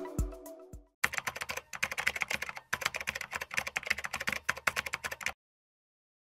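Rapid computer-keyboard typing, many keystrokes a second for about four seconds with a short break midway, as a sound effect; it stops shortly before the end. Before it, the last notes of the intro music die away in the first second.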